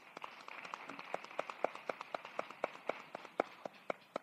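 Small audience applauding, fairly quiet, a scatter of sharp hand claps that thins out and dies away near the end.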